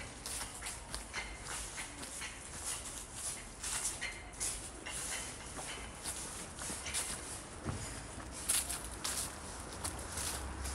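Footsteps of a person walking at a steady pace on a stone-paved sidewalk, about two steps a second.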